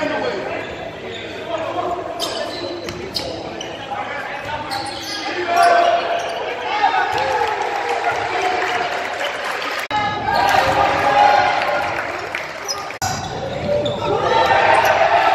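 Live gym sound of a basketball game: a ball bouncing on the hardwood court among shouting players and spectators, echoing in the large hall. The sound is broken by two abrupt edits near the end.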